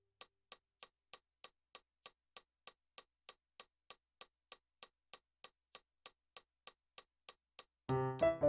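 A metronome clicking steadily at a fast tempo, a little over three clicks a second, heard on its own while the piano rests. Keyboard piano chords come back in near the end.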